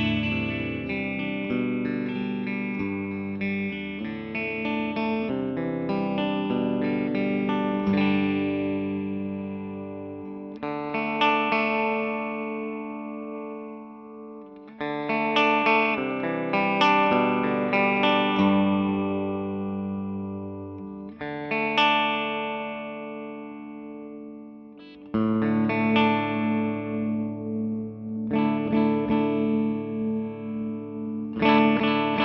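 Electric guitar played through a Fender 6G6B Bassman-circuit tube amp head running NOS Brimar, Mullard and Telefunken preamp tubes and TAD 6L6GC STR power tubes. Chords are struck every second or few and left to ring and fade, dying away quietly before new strums come in near the middle and again about five seconds from the end.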